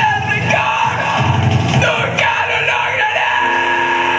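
Metalcore band playing live: shouted, screamed vocals over distorted guitars and drums, loud and dense throughout, with a held note ringing in near the end.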